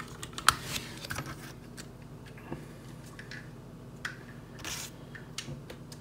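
Light, irregular clicks and rattles of hard plastic toy parts as a small linked chain weapon and clip-on pieces are handled and unclipped from a B2FIVE Acid Rain toy tank.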